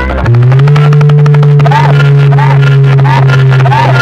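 DJ competition sound blasting very loudly from a truck-mounted array of horn loudspeakers. A low buzzing drone cuts in just after the start, slides up a little and then holds. A short chirp repeats about every half second over it.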